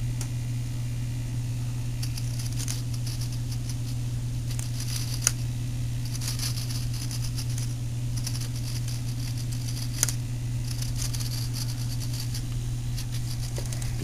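Model-aircraft servos buzzing in several short bursts as they drive the wing flaps down and back up, with a couple of sharp clicks. A steady low hum runs underneath.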